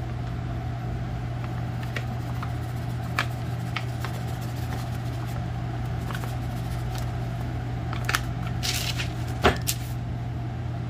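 A steady low electrical hum, with a few light ticks and a brief papery rustle near the end as flour is shaken from a paper bag into a ceramic dish.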